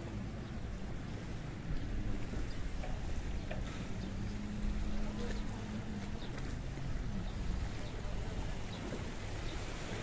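Seaside wind buffeting the microphone in a steady low rumble, with waves washing on the rocks. A low steady drone sounds for a couple of seconds midway.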